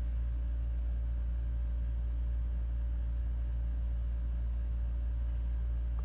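A steady low mechanical hum, unchanging throughout, with a faint thin tone above it.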